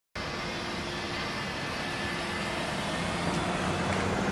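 Steady street traffic noise from vehicles on the road, with a low engine hum that grows a little louder near the end.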